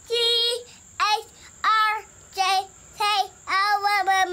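A young child singing a wordless tune in six short, high notes, about one and a half a second, each note sliding up as it starts.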